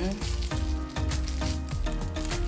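Thin clear plastic wrapper crinkling as it is worked off a pen by hand, a run of small crackles over background music.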